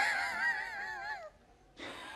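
A person humming a short, wavering high note. It fades out a little over a second in.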